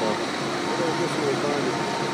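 Faint talking over the steady hum of an idling vehicle engine.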